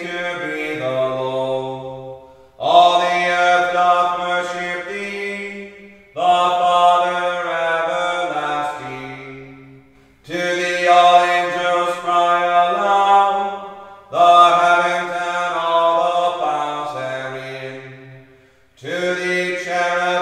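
Anglican chant: a canticle sung in phrases of about four seconds, each phrase stepping down in pitch at its close, with short gaps between phrases.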